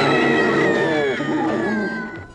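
A person's long, high-pitched scream that slowly falls in pitch and fades near the end.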